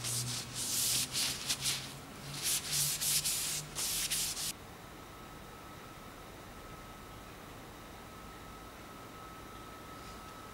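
A cloth wiping down a metal bicycle frame in a series of rubbing strokes, cleaning off contaminants before painting. The strokes stop abruptly about four and a half seconds in, leaving quiet room tone with a faint steady high hum.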